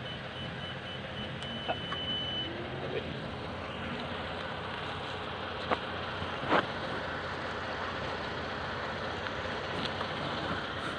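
Steady hum of a motor vehicle running. A thin, high, steady beep sounds for the first two seconds or so, and two sharp knocks come a little past the middle.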